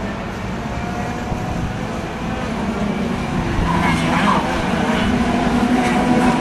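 A pack of Junior TKM karts' two-stroke engines buzzing at racing speed. The sound grows louder from about halfway through as the pack comes closer.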